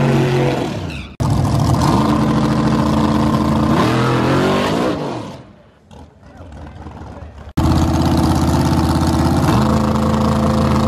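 Drag-race car engines at high revs. An engine note held during a burnout breaks off abruptly; a second engine runs at steady revs and then climbs in pitch as the car accelerates away, fading out about halfway through. After another abrupt cut, a loud engine holds steady revs on the start line and begins to climb near the end as the car launches.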